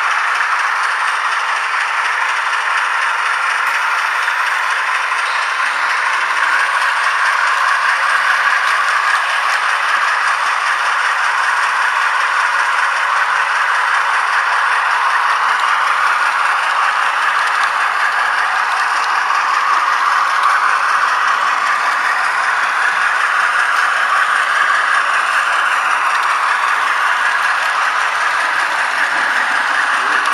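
An H0-scale model train running steadily along the layout's track, heard as a loud continuous rattle and clatter of wheels and the onboard camera rig.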